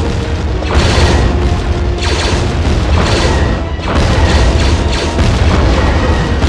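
Space-battle sound effects: repeated sudden booming blasts over a heavy, continuous low rumble, mixed with background music.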